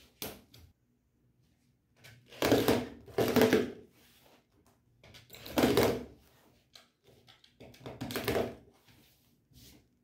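Rotary cutter rolling along an acrylic ruler and slicing through cotton fabric layers on a cutting mat, trimming the edge: three separate cuts, each lasting about a second, a couple of seconds apart.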